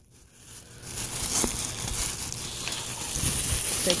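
Plastic trash bags rustling and crinkling as they are handled. The sound is quiet at first and picks up about a second in, with a few light clicks.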